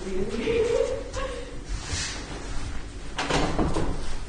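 A person's voice making a drawn-out, wavering cooing hoot at the start. About three seconds in comes a short, noisy burst.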